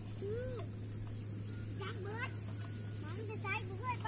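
Young children's voices calling out and chattering in short, high-pitched phrases, over a steady low hum.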